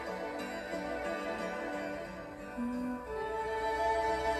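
Recorded instrumental backing music playing with no voice: held, string-like notes, rising a little in loudness with a new higher note about three seconds in.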